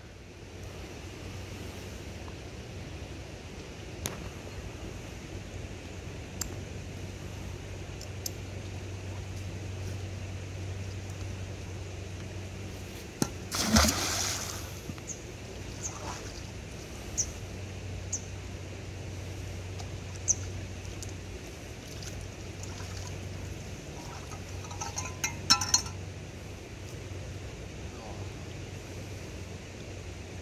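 A magnet-fishing magnet on a rope splashing into canal water about fourteen seconds in, over a steady low hum. Short knocks and clinks come now and then, several close together near the end.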